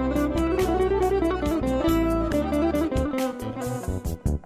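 Live instrumental Azerbaijani folk music: a plucked tar and a keyboard play the melody over a steady low accompaniment with light percussive strokes. The low accompaniment thins out near the end.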